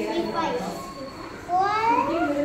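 A young child speaking, the voice rising sharply in pitch and getting louder about one and a half seconds in.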